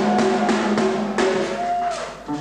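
Rock drum kit played in a short burst of bass drum, snare and cymbal hits, with crashes at the start and again about a second in, over a steady sustained note.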